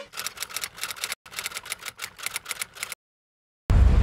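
Rapid typewriter-like clicking sound effect, about seven clicks a second with one brief break, then a moment of dead silence and a loud, deep hit near the end as a scene transition.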